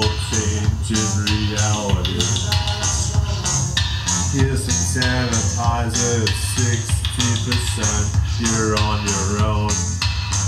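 Live band music with guitar and bass and a steady beat, and a man singing into a handheld microphone.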